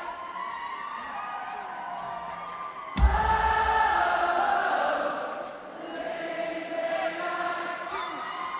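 Live synth-pop band music in a large concert hall, with voices singing and the crowd cheering. A sudden heavy bass hit lands about three seconds in, and the music is fuller after it.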